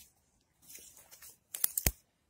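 Faint rustling, then a quick cluster of sharp clicks near the end: handling and movement noise from someone walking with a handheld phone through brush.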